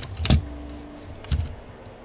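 A few sharp knocks and rattles from a dark tablet being handled close to the microphone. The loudest comes about a third of a second in and another just under a second and a half in.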